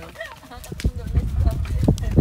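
A few knocks and clinks as a metal moka pot is handled on a camp table, with low rumble underneath.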